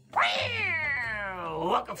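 A single long meow-like call with a rich, buzzy tone, falling steadily in pitch over about a second and a half and stopping just as speech begins.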